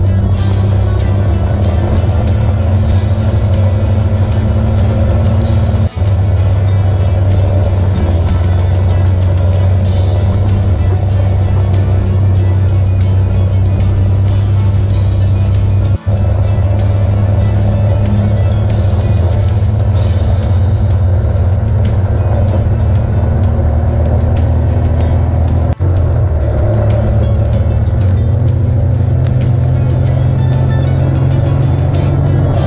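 Snowmobile engine droning steadily at cruising speed, close to the camera, with music tagged alongside it. The sound drops out briefly three times, about every ten seconds, and the engine pitch shifts a little after each break.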